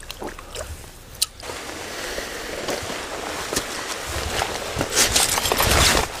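Shallow stream water sloshing and splashing as someone wades through it, with scrapes and knocks of boots on stones. Quiet at first, growing busier and louder from about a second and a half in, and loudest near the end.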